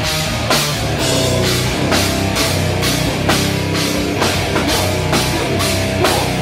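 Death metal band playing live: distorted electric guitars over a drum kit, with a steady beat of cymbal and snare hits a little over twice a second.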